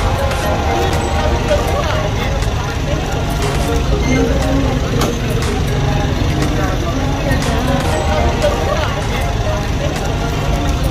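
Indistinct chatter of several people, with no words made out, over a steady low rumble.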